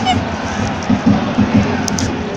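Football crowd in a stadium: a loud, dense mass of fans' voices and cheering, with irregular low thumps running under it.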